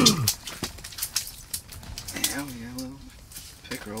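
Scattered light taps and slaps of a freshly caught chain pickerel flopping on the ice, mixed with handling noise, while a man's voice sounds briefly in the middle.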